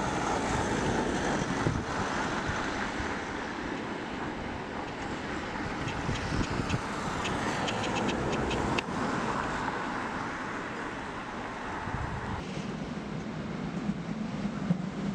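Steady urban road-traffic noise with a few faint clicks in the middle. Near the end a lower rumble comes up as a train approaches along the tracks.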